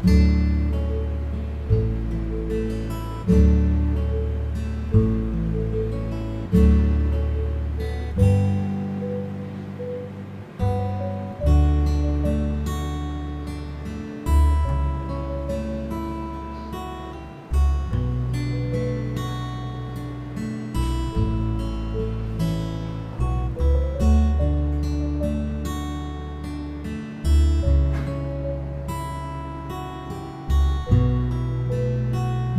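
Background music: an acoustic guitar strumming and plucking chords, each struck every second or two and left to fade, over low bass notes.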